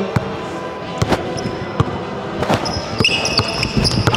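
Basketball dribbled on a hardwood gym floor, bouncing about every three-quarters of a second, with sneakers squeaking on the court near the end.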